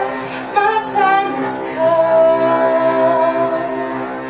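A woman singing a slow song live, with long held notes (one held for over a second in the middle), over sustained instrumental accompaniment.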